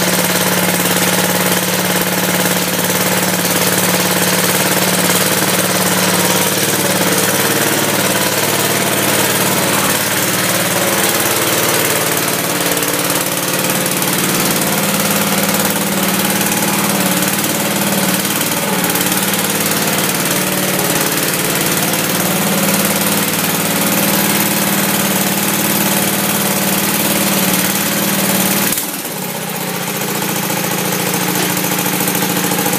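Sears Hydro-Trac garden tractor engine running steadily at idle, its pitch shifting slightly around the middle, with a sudden brief drop in level near the end.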